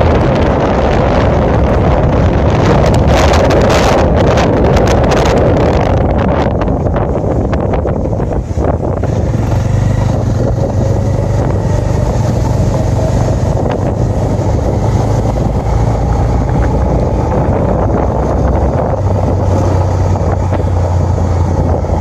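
Wind rushing and buffeting over the microphone of a moving vehicle, with a steady low motor hum beneath. The wind is heaviest, with sharp gusts, through the first several seconds, then eases and the hum comes forward.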